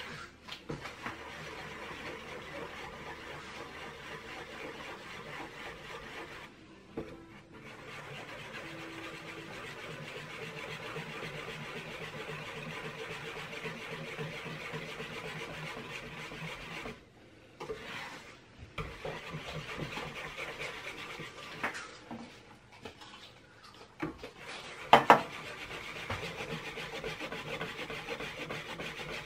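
Wire whisk beating a custard mixture of egg yolks, condensed milk and evaporated milk in a metal bowl, the wires scraping steadily against the bowl with a few brief pauses. A single sharp knock comes near the end.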